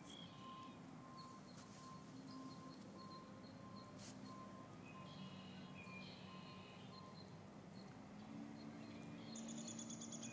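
Faint beeping, about two short tones a second, that stops about seven seconds in, with a few faint chirps; a low steady hum comes in near the end.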